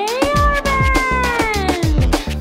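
Pop birthday-song backing track with a steady drum beat, over which a voice holds one long note that slides up and then slowly sags down.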